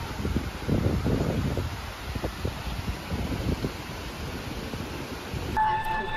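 Wind buffeting the microphone in uneven low gusts. Near the end it cuts abruptly to a steady hum.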